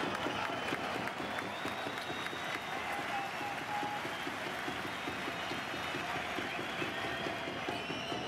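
Football stadium crowd noise: a mass of fans applauding and calling out, holding a steady level.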